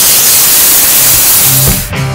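Compressed-air blow gun blasting a loud, steady hiss of air into a car's engine bay to blow off dust and leaves; it cuts off near the end as background music comes in.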